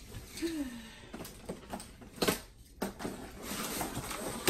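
Cardboard flaps of a mattress shipping box being handled and lifted: a series of short knocks and scrapes, the loudest a little past halfway.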